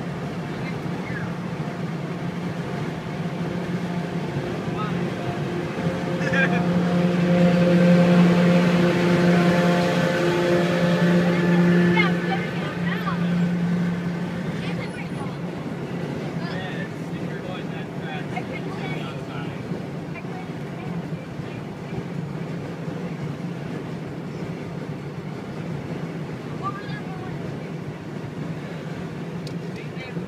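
Steady engine drone and road noise heard from inside a car cabin at freeway speed. About six seconds in, the engine hum grows louder with several steady tones stacked over it, then eases back after about 14 seconds.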